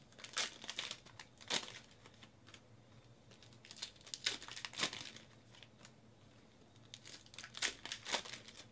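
A 2019 Panini Donruss baseball card pack's wrapper crinkling and tearing as it is pulled open by hand. It comes in three bursts of crackle: near the start, around four to five seconds in, and near the end.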